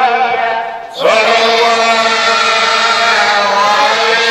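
A young man's solo voice chanting Maulid verses in Arabic. There is a short break about a second in, then one long held note.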